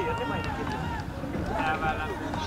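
Voices of people calling out and talking on an open field, broken into short phrases, over a steady low hum.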